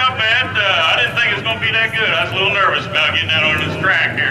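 A man talking steadily into a hand-held microphone, with a steady low hum underneath.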